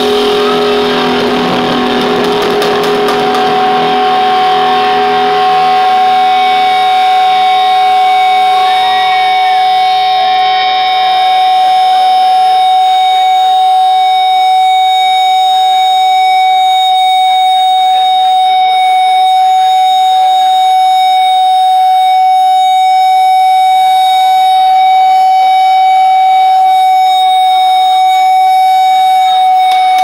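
Electric guitar feedback through an amplifier, held as one steady high whine, with a lower second tone that fades out over the first several seconds.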